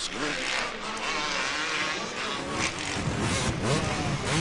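Supercross motorcycle engines revving and buzzing as the bikes race the track. About three seconds in the engine sound turns louder and deeper, as from a bike's on-board camera.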